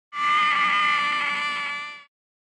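A person's long, high-pitched scream, one held cry that fades away at the end.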